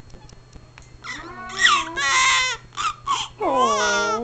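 Newborn baby crying during a diaper change: after a quieter first second, a string of high, wavering wails in short bursts, one after another.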